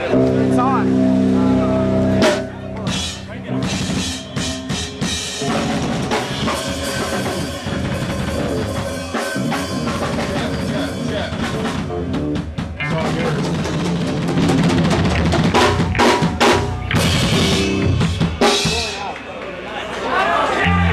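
Drum kit hit in loose, irregular strokes, with an amplified note held for about the first two seconds: a band warming up on stage before its set.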